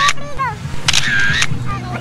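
The same short, high-pitched shouted phrase heard twice, about a second and a half apart, like a short clip looping on a phone's speaker, over a low steady hum.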